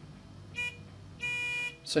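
Panel buzzer driven by the LCR.iQ register's warning output, sounding a short beep and then a half-second beep: the deadman warning timer has expired while the handle is held down.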